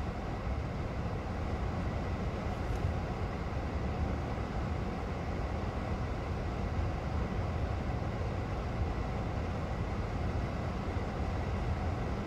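Steady low rumble of idling engines heard inside a stationary car's cabin, with no distinct events.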